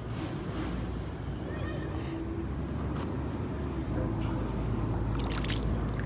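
River water sloshing against a stone edge, with a steady low rumble of wind on the microphone. A few sharp splashy clicks come near the end.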